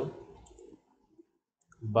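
A few faint clicks of handheld calculator keys being pressed, with near silence between them.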